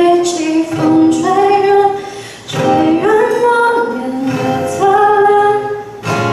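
A woman singing a Mandarin pop ballad with long, held notes, accompanying herself on a strummed acoustic guitar. The singing breaks off briefly about two and a half seconds in.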